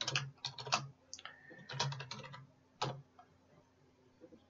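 Typing on a computer keyboard: irregular runs of keystrokes with short pauses between them, the last one about three seconds in.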